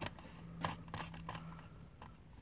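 Faint scattered clicks and scrapes of a screwdriver tip working a spacer into place in the plastic die wheel of a manual curtain grommet press, over a faint steady hum.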